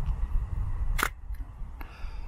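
Hasselblad 500C/M medium-format camera clicking as its mirror is locked up: one sharp mechanical clack about halfway through, then a fainter click near the end, over a low rumble on the microphone.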